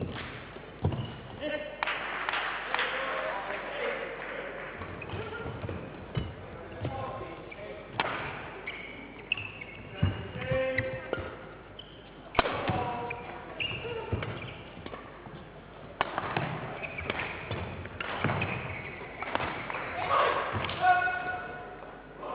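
A badminton rally in a large sports hall: rackets hitting the shuttlecock in quick irregular exchanges, mixed with the players' footwork on the court.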